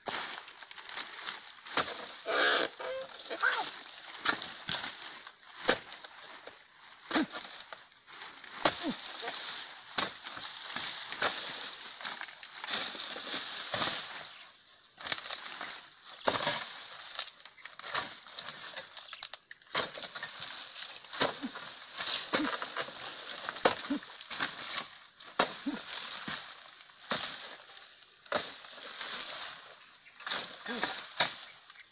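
Oil palm fronds being cut away in pruning: irregular chopping and cracking blows with rustling and crackling of the fronds. There is a short pitched sound about two and a half seconds in.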